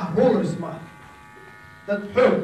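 A man speaking in short phrases, with a pause between them, over a steady electrical buzz and hum.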